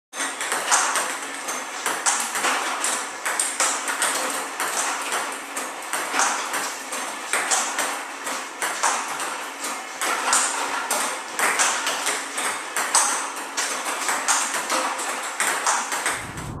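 Table tennis ball clicks in a steady, fast rally. A ball robot feeds medium topspin to random spots at about 45 balls a minute, and each ball bounces on the table and is blocked or countered off a paddle, giving a hard pock every fraction of a second.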